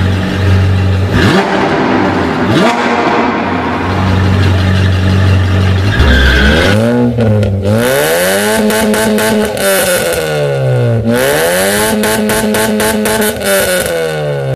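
Sports car engine idling low and steady, then revved up and down several times in long rising and falling sweeps.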